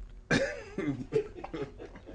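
A person laughing in short, cough-like bursts that start sharply about a third of a second in.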